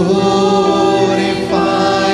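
A choir singing a slow worship hymn in long held notes, with a new phrase coming in louder at the start.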